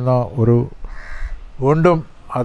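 A crow cawing once, briefly, about a second in, a short harsh call between a man's spoken phrases.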